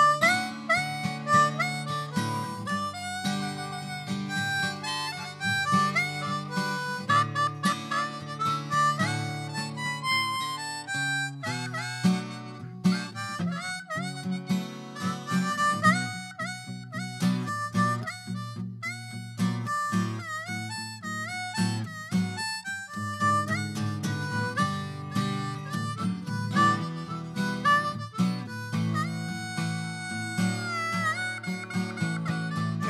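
Blues harmonica solo played cupped against a handheld microphone, with bent, sliding notes, over a low guitar accompaniment.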